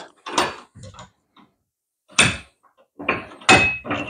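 Cast-iron bench vise being loosened: its T-handle is turned and the jaws open, giving a series of separate metal knocks and scrapes, the sharpest about two seconds in. Near the end a cluster of knocks carries a short high tone.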